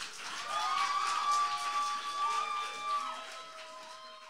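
Audience applauding and cheering with held whoops at the end of a spoken word poem, dying away near the end.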